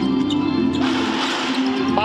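Arena music with steady held notes playing over the crowd in a basketball hall, the crowd noise swelling about a second in.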